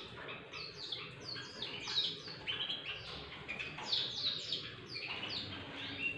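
Many caged birds chirping together: a dense, overlapping chatter of short high chirps that carries on throughout.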